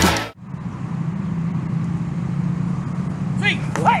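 Background rock music cuts off a moment in. A steady low hum under outdoor noise follows, and a voice calls out "hey" near the end.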